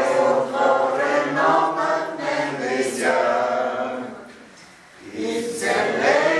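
A group of people singing a hymn together in slow, held phrases, with a break for breath about four and a half seconds in before the next phrase.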